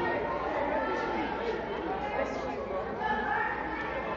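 Chatter of many students' voices talking over one another in a school gymnasium, with no single voice standing out.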